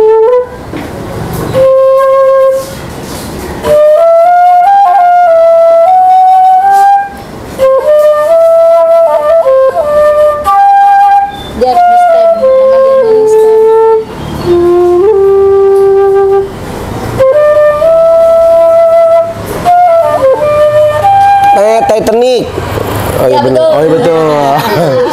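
A silver concert flute, a student model, playing a slow melody in short phrases of held and gliding notes, with brief breath pauses between phrases.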